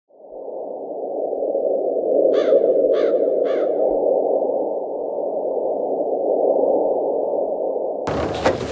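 Steady, muffled rushing noise, like a wind sound effect, fading in at the start, with three short harsh calls about half a second apart a little over two seconds in.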